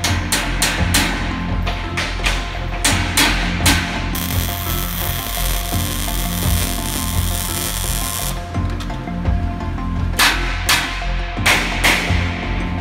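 A quick series of hammer blows on steel plate, then a MIG welding arc hissing steadily for about four seconds, then a few more blows near the end. Background music plays underneath.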